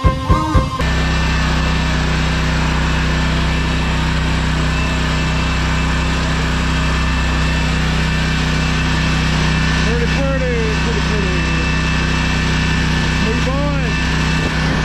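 Music cuts off abruptly under a second in, giving way to a small engine idling steadily, a lawn mower's engine running at rest.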